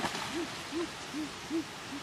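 A bird hooting a quick series of short low notes, each rising and falling in pitch, about two and a half a second.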